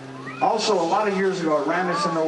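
A ringing guitar chord stops right at the start, and after a short gap a man's voice comes in through the stage microphone in long, wavering tones.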